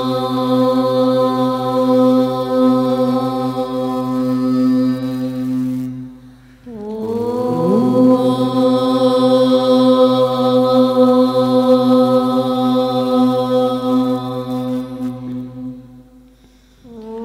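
A group of voices chanting together in unison on one long held note, breaking for breath about six seconds in, then sliding up into a second long held note that stops just before the end.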